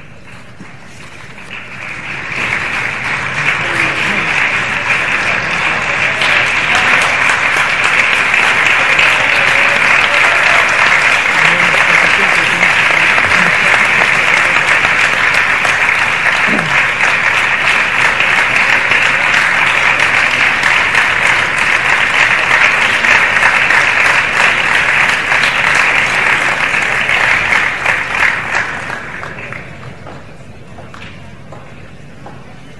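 Audience applauding, building up over the first couple of seconds, holding steady and dying away near the end.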